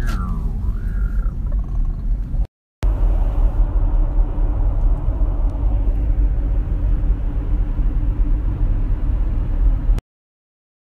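Loud, steady low rumble of a car's road noise heard from inside the cabin, broken by a sudden short gap about two and a half seconds in. At the very start a sung note slides down and ends.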